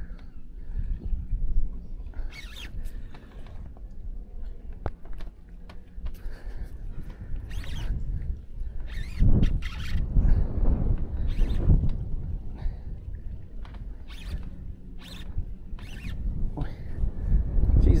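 Wind rumbling on the microphone on a small fishing boat, swelling and easing, with scattered clicks and knocks while a hooked barramundi is played on rod and reel.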